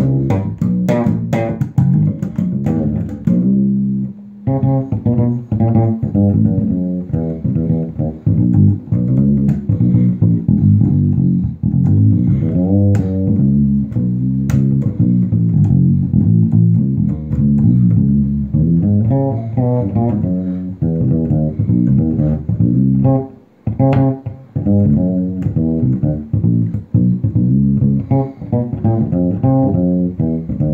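SX Ursa 3 fretless electric bass with passive PJ pickups, played through an amp in a busy improvised groove of quick notes. Sharp, clicky attacks mark the first few seconds, and the line pauses briefly about four seconds in and again about two-thirds of the way through.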